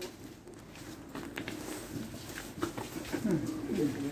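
Pigeons cooing, low wavering coos that grow stronger near the end, with scattered footsteps and small knocks.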